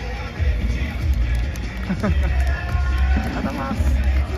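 Crowd of away football supporters singing a chant in the stands, a parody of the home mascot's song, over a heavy low rumble.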